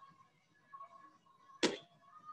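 An exercise mat slapping flat onto a wooden gym floor once, a sharp short smack near the end, over faint background music.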